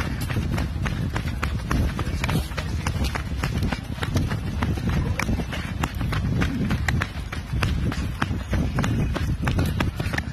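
Running footsteps on a dry dirt trail strewn with leaves, about three footfalls a second, over a steady low rumble on the microphone.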